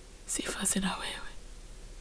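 Speech only: a woman quietly saying one short word of prayer, about half a second in.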